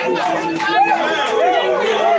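A crowd of men's voices, many people chanting and calling out at once over each other.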